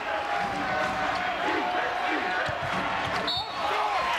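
Basketball arena crowd noise with the ball bouncing on the court. About three seconds in a short referee's whistle sounds, calling an offensive foul.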